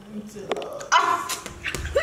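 People's voices with a short, sharp yelp-like cry about a second in.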